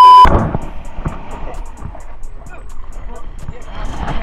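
The loud, steady beep of a TV colour-bars test tone cuts off suddenly about a quarter second in. Quieter background music follows, with an even ticking beat of about three ticks a second, under faint voices.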